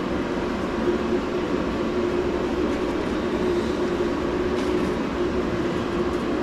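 Steady mechanical drone with a constant low hum, and a few faint ticks of wires being handled late on.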